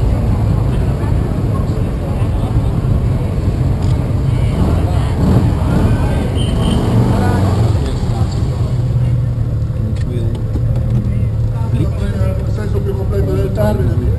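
A vintage car engine idling in a steady low rumble, with indistinct voices of people around it.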